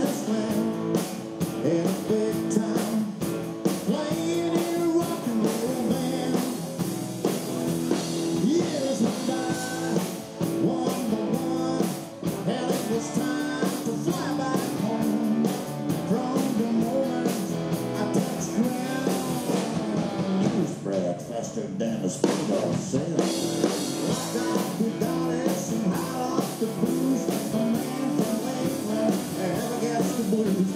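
A live rock-and-roll band playing a song on electric and acoustic guitars with drums and bass, with singing at times. The drum beat thins out briefly about two-thirds of the way through.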